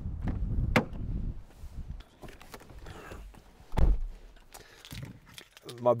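Footsteps and a sharp click as the driver's door of a Citroen Grand C4 Picasso is opened, then one solid thud a little under four seconds in as the car door shuts.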